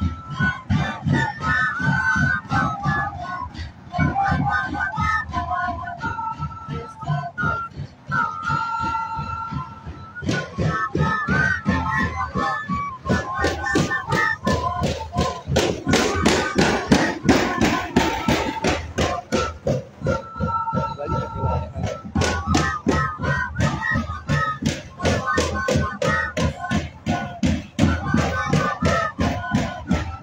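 Live Andean folk music: flutes play a wavering melody over large double-headed bass drums beating a steady rhythm.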